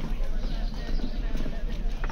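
Busy market street ambience: people talking in the crowd, with scattered short knocks mixed in.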